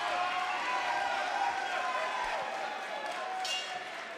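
Fight crowd chatter: many overlapping voices talking and calling out at once, with no single voice standing out, easing off slightly near the end.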